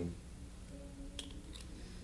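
A pause in a man's talk: quiet room tone with a faint low hum, and two brief light clicks a little past the middle.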